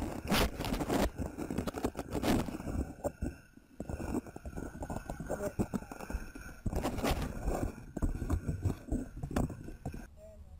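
Irregular knocks, clicks and scrapes close to the microphone of a camera lying on the ground beside a balloon payload, over a low rumble, with faint voices of people nearby. The sound dips briefly about three seconds in.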